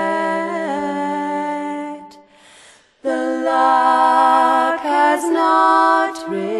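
Unaccompanied voices singing in close harmony, holding long chords with no words heard. The chord shifts once before a short pause about two seconds in, then a new, louder chord comes in at about three seconds and moves again near the end.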